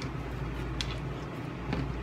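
Soft handling sounds of ketchup packets being squeezed and handled, a couple of faint clicks or crinkles, over a steady low hum.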